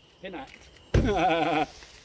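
A person laughing: a faint short laugh at the start, then a louder, wavering laugh about a second in.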